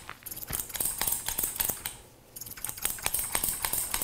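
Barber's scissors snipping hair close to the microphone: a run of quick, crisp snips with a short pause about two seconds in.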